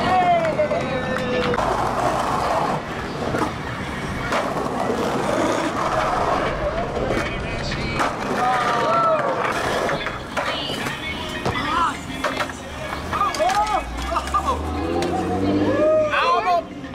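Skateboard wheels rolling on a concrete sidewalk, with sharp clacks of the board hitting the ground several times. Onlookers' voices call out on and off over it.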